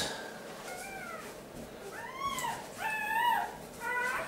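Newborn puppies crying: a series of short, high-pitched, arching mewing cries about once a second, faint at first and louder toward the middle and end.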